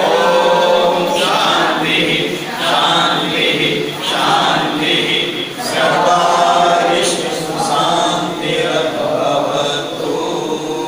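A group of people chanting a prayer together in unison, led by a man's voice through a microphone, in continuous phrases with short breaks between them.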